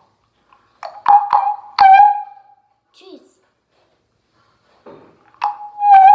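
Handheld megaphone giving a loud, high-pitched steady squeal twice, each time starting with a few sharp clicks: first about a second in, then again near the end.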